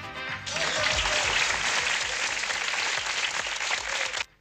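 Background music, joined about half a second in by a loud, steady burst of applause that cuts off abruptly at the scene change.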